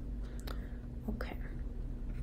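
A few faint, short clicks and soft mouth or breath sounds over a steady low hum.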